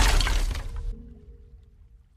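The tail of a loud shattering crash, dying away over about a second and a half, with a faint held note of music under it.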